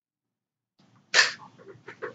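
A person sneezing: one sharp, loud burst about a second in, followed by a few softer breathy sounds.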